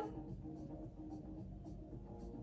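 Faint sipping and swallowing as a person drinks from a small glass, with small soft clicks over a low steady hum.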